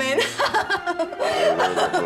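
A woman laughing, a chuckle.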